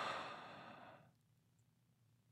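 A person's breathy sigh, about a second long, fading out.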